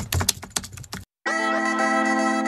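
Keyboard-typing sound effect: a quick run of key clicks lasting about a second. After a short gap, music begins near the end with a steady low drone under a melody.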